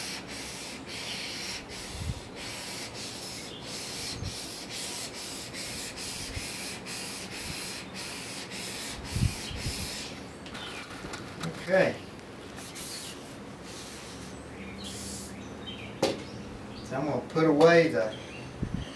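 Steel drawknife blade rubbed back and forth on a wet 800-grit waterstone: an even rhythm of gritty scraping strokes, about two a second, for roughly the first ten seconds. After that the honing stops and there are only a few soft knocks and handling sounds.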